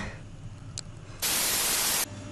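A sudden burst of hissing static, white noise at one even level, starts past the middle, lasts under a second and cuts off abruptly. It sounds like a noise transition effect laid over a video edit.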